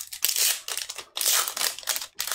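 Foil wrapper of a Magic: The Gathering collector booster pack crinkling in short, irregular bursts as it is pulled open by hand.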